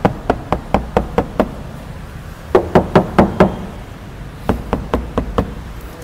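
Knuckles rapping on the steel door panels of a Maruti Wagon R, in three quick runs of about five to seven knocks each. The knocks compare a door lined with a single layer of sound-damping sheet against an undamped door of bare hollow sheet metal.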